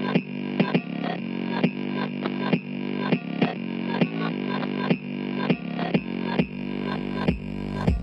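Instrumental section of a trap-style hip-hop beat with no vocals. It is filtered so that it sounds thin, with no deep bass and no bright top, over a steady drum pattern. The full beat with deep bass kicks back in at the very end.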